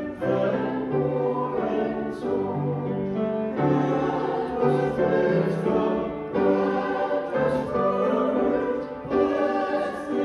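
A church congregation and small group of singers singing a hymn in slow, even notes, with piano accompaniment.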